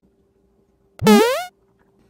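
A short synthesized sound effect: a single quick upward-sliding tone, about half a second long, about a second in.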